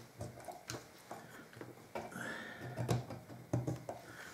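Light clicks and knocks of hands working the catches on the back door of an old glass-plate box camera, a handful of separate small handling sounds.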